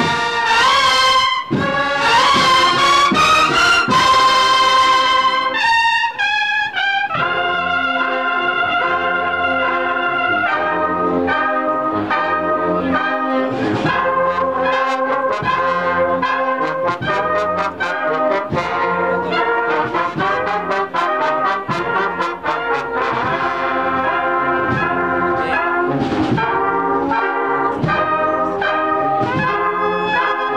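Large Andalusian Holy Week brass band of trumpets, trombones and low brass playing a processional march: loud sustained chords with a rising swell, a short break about six seconds in, then the full band carrying on over a steady rhythmic beat.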